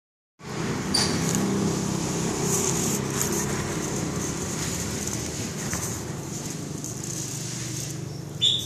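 Car engine idling steadily, heard up close in the engine bay, with a couple of brief clicks of handling noise.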